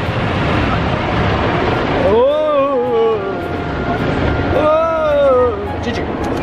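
Automatic car wash brushes and water scrubbing over the car, heard from inside the cabin as a steady rushing noise. About two seconds in, and again near the end, come two long cries that rise and fall, each lasting about a second.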